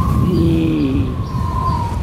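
Dubbed flight sound effect: a low rumble under a held high tone, with pitched glides that rise and fall.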